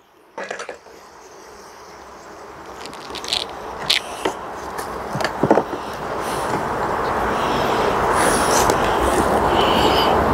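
Metal hive tool prying and scraping wooden frames loose in a beehive, with a few sharp clicks and cracks in the middle. Under it a steady rushing noise grows louder throughout.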